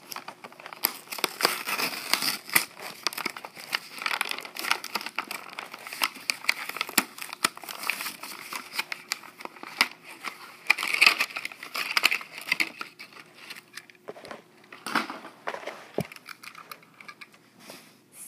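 Clear plastic blister package and cardboard backing of a die-cast toy car being opened by hand: crinkling and crackling of the plastic, coming on and off in bursts.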